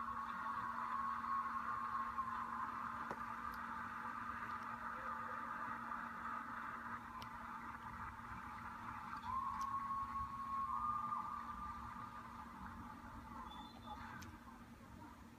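Arena audience applauding, heard thin and narrow-band through a computer's speaker, with two held whistle-like notes, one at the start and one about ten seconds in, over a steady low hum.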